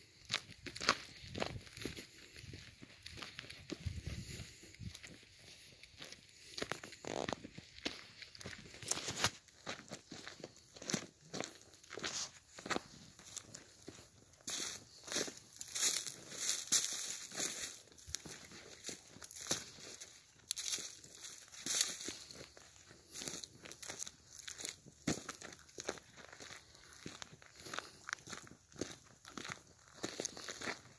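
Footsteps through dry fallen leaves and brush at a walking pace, each step a short rustle.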